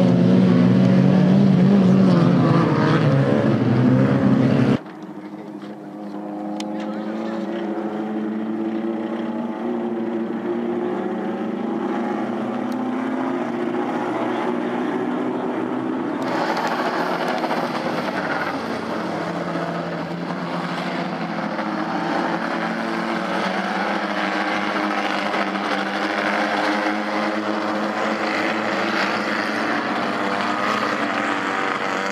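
Several small Fiat race-car engines running hard around a dirt track, their pitch rising and falling as they accelerate and change gear. The sound drops abruptly about five seconds in, then builds again.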